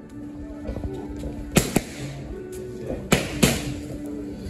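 Boxing gloves smacking into focus mitts: four sharp punches in two quick pairs, about a second and a half apart, over background music.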